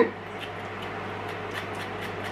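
Spoon edge scraping the skin off a piece of fresh ginger: a few faint, short scrapes over a steady low hum.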